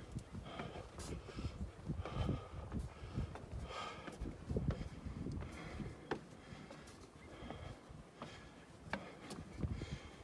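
A climber's heavy breathing, a breath about every second, as he climbs a steep wooden ladder, with a couple of sharp knocks on the wooden rungs and a low rumble underneath.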